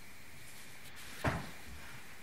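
Steady room hiss with a single brief bump about a second and a quarter in.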